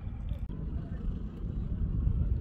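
Outdoor background noise: an uneven low rumble with faint voices.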